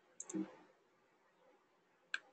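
Two quick computer mouse clicks about a fifth of a second in, followed at once by a short low thump. After that there is only faint room tone.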